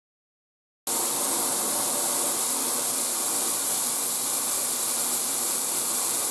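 Mirable shower head spraying in straight-stream mode, a steady hiss of water pouring into a bathtub that starts abruptly about a second in.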